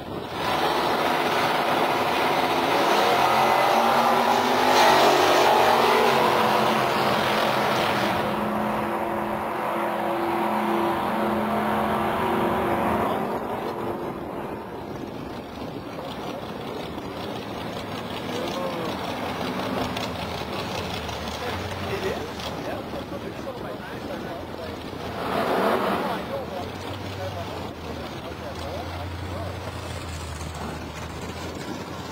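Two drag cars launching side by side from the start line at full throttle, their engines loud for the first dozen seconds as they run down the strip, then dropping away. A short burst of engine revving comes about 25 seconds in, and a low engine idle near the end.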